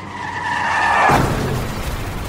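Car tyres screeching in a skid, two high steady tones over rising noise that build to a peak about a second in, then break off into a lower rumbling noise, the sound of a car crash about to happen.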